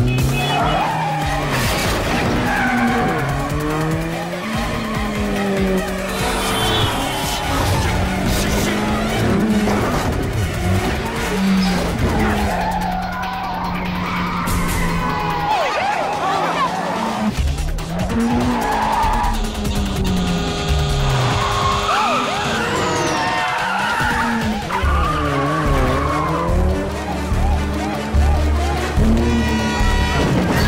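Car-chase sound mix: car engines revving up and down over and over and tyres squealing, under background music.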